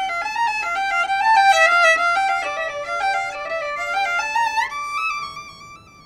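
Carbon-fibre violin being played: a quick melody of short stepping notes, then a slide up about four and a half seconds in to a held high note that fades away near the end.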